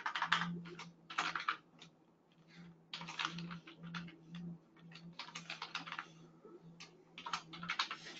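Typing on a computer keyboard: quick runs of keystrokes in several short bursts separated by pauses.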